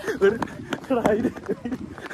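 Running footsteps on a paved road, about three strides a second, with voices over them.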